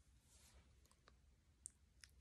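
Near silence: room tone with a few faint small clicks, one a little louder near the end.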